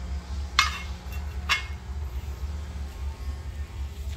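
Two sharp metallic clinks about a second apart, steel kitchen knives knocking against each other as one is handled on a display rack, over a steady low hum.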